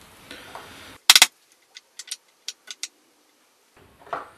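Hammer tapping the RA axis shaft of a Skywatcher NEQ6 mount back into its housing with the new timing pulley: three hard, quick taps about a second in, then a run of lighter clicks.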